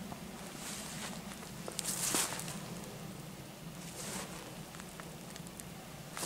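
Undergrowth leaves rustling in several short bursts, loudest about two seconds in, with a few sharp clicks, as someone moves among bramble plants. A low steady hum runs underneath.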